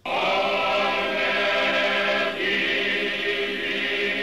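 Georgian polyphonic folk singing: a choir of several voices holding long chords, cutting in suddenly and shifting chord a couple of times.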